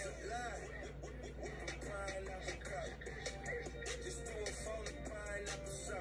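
A hip hop track playing at low volume, with rapped vocals over a steady low bass line.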